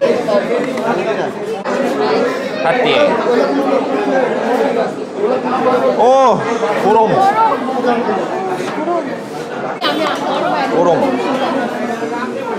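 Many overlapping voices chattering at once in a large, crowded dining hall, with a nearer voice standing out now and then.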